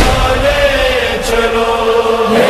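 A voice chanting an Urdu noha (devotional lament), drawing out long held notes.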